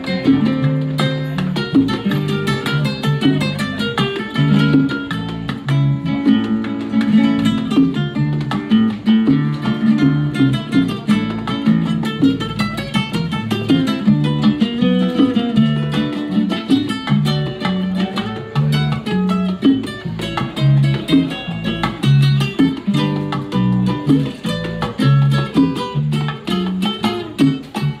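Live Cuban instrumental played by a trio: an acoustic guitar picking a busy melody over a repeating electric bass line, with bongos keeping time.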